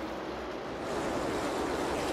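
The steady rushing roar of a field of stock cars at speed, growing a little louder about a second in.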